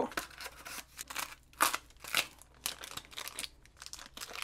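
Cardboard box and small plastic zip bag handled by hand while being unpacked: irregular short bursts of rustling and crinkling.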